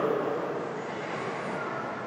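Steady room background noise, an even hiss with no speech, trailing off slightly after the last word.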